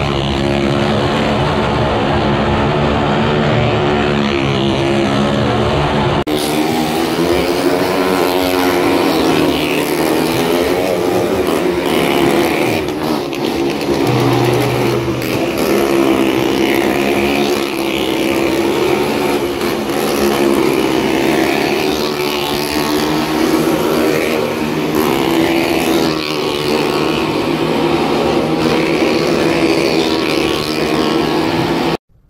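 Motorcycle engines revving as stunt riders circle the wooden wall of a well-of-death drum, the engine pitch rising and falling without pause.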